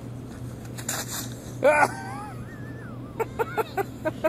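A child's short loud cry about two seconds in, then a high wavering voice, then a quick burst of laughter near the end, over a steady low hum.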